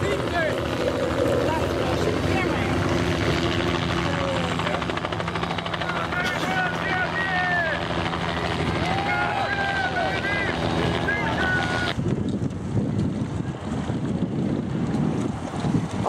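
A steady engine hum under outdoor crowd noise, with spectators' shouts rising over it. About twelve seconds in it cuts off abruptly, and wind buffeting on the microphone takes over.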